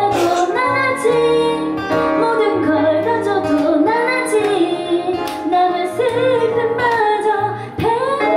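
Live band performance of a Korean ballad: a woman singing over ukulele strumming and keyboard chords with sustained low bass notes.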